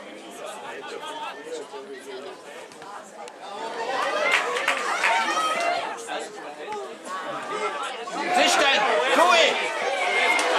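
Several voices calling and shouting over one another, from players and onlookers at a football match. The shouting gets louder about four seconds in and again near the end as play moves toward the goal.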